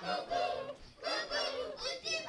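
A crowd of young children shouting together in high voices: two drawn-out calls with a short break about halfway.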